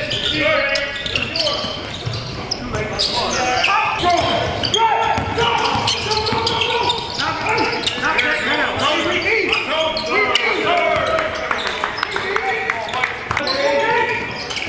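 Basketball players calling out to each other during a scrimmage, with the ball bouncing on the hardwood court in sharp, repeated thuds.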